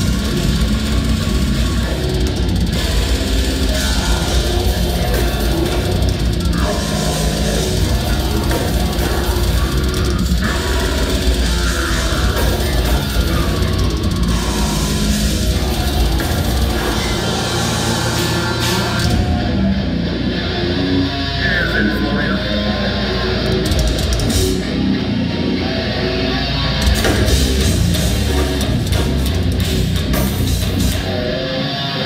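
Brutal death metal band playing live at a steady, loud level: distorted electric guitars, bass guitar and drum kit, with the vocalist growling into the mic.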